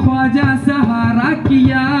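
Qawwali sung by a chorus of men's voices, with one held note under gliding melodic lines, accompanied by hand claps.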